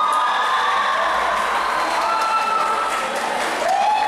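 Audience cheering and applauding, with several voices holding long high-pitched screams over the clapping.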